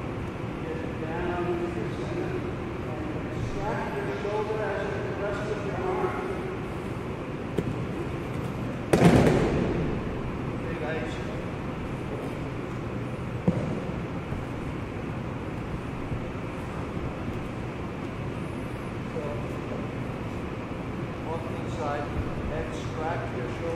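A body hitting a padded mat in a breakfall, one loud thud about nine seconds in that dies away in the hall's echo, with a lighter knock a few seconds later; quiet voices are heard before it.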